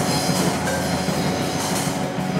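Live rock band playing an instrumental passage: electric guitars, bass guitar and drum kit in a steady, dense wash with cymbals.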